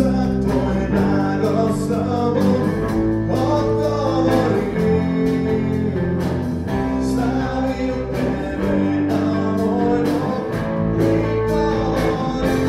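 Live Christian worship band playing a song: electric guitars, bass and drums, with a man singing lead into a microphone.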